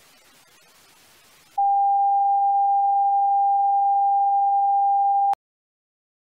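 Faint static hiss, then a loud steady test-tone beep, one pure tone held for nearly four seconds that cuts off suddenly with a click.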